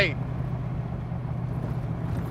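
Stroker 427 V8 of a Backdraft Racing Cobra replica running steadily through stainless side pipes as the open roadster drives along, a low, even exhaust note heard from the cockpit.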